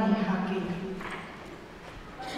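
A man's voice over a microphone, holding one drawn-out syllable for about a second and then trailing off into a short pause.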